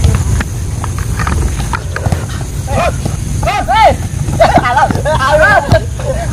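Footballers shouting short, high calls to each other across the pitch, several in quick succession from about three seconds in, over a steady low rumble of wind on a phone microphone. A few sharp knocks of the ball being kicked come in the first couple of seconds.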